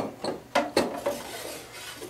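The clear plastic water reservoir of a Saeco Aroma espresso machine being lowered into its slot at the back of the machine: a knock, then two more about half a second in, with plastic rubbing and scraping as it slides down and seats.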